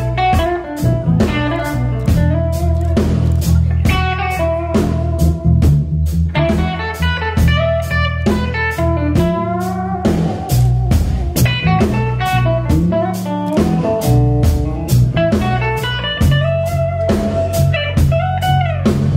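Live blues band playing, led by a semi-hollow-body electric guitar whose notes bend up and down, over electric bass and a drum kit keeping a steady beat.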